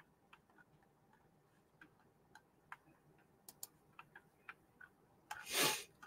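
Faint, irregular clicks of a computer mouse being clicked and scrolled while paging through an image gallery. Near the end comes a short breathy hiss, the loudest sound here.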